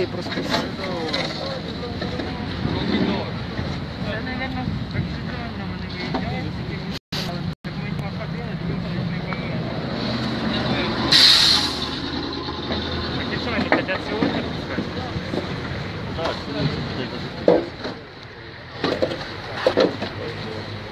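Steady low engine drone with indistinct voices in the background. A brief hiss comes about eleven seconds in, and the sound cuts out twice for a moment near seven seconds.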